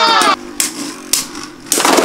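Beyblade Burst spinning tops whirring and knocking together in a plastic stadium, with sharp clicks and a short rattle in the quieter middle. A raised voice calls out at the start and again near the end.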